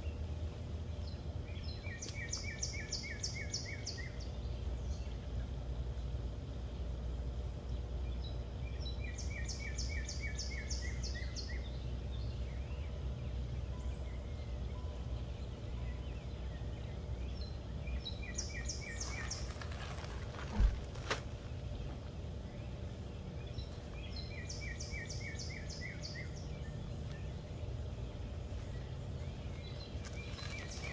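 A songbird repeating a short phrase of rapid notes about every six to eight seconds, over a steady low background rumble. A single sharp thump about two-thirds of the way through.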